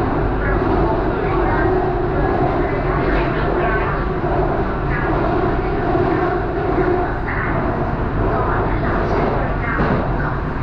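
BTS Skytrain carriage running along the elevated track, heard from inside the car: a steady rumble of wheels and traction motors with no break or stop.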